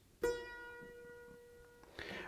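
A single held note on a triple-fretted clavichord, a copy of an instrument from about 1700 originally made in Leipzig, played with Bebung: varying finger pressure on the key bends the string's pitch slightly into a vibrato. The note is quiet. It starts about a quarter second in, fades gradually and stops short near the end.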